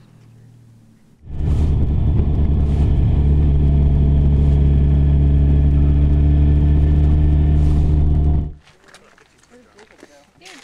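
Yamaha FJR1300's inline-four engine running at a steady cruise, heard from the rider's seat. It cuts in suddenly about a second in and cuts off suddenly after about seven seconds.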